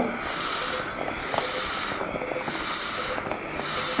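Self-inflating resuscitation bag squeezed through a face mask at about one breath a second. Each squeeze gives a half-second hiss of air: positive-pressure ventilation of a newborn manikin at increased pressure.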